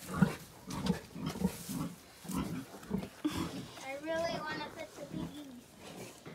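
A litter of young piglets grunting in short, low pulses about every half second. A higher, wavering call comes about four seconds in.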